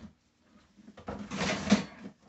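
Corrugated plastic hose being pulled out of a stainless steel shop-vac tank: about a second of scraping and rustling, with a knock near the end.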